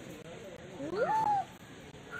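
A single meow-like animal call about a second in, sliding up in pitch and then held briefly.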